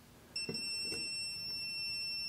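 Klein Tools NCVT-3P non-contact voltage tester sounding its audible alarm, a steady high-pitched tone that starts about a third of a second in. The alarm means it has detected voltage on the hot side of a live receptacle.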